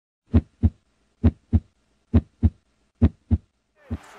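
Heartbeat sound effect: four pairs of deep thumps in a steady lub-dub rhythm, about one pair a second, then a single thump just before the end.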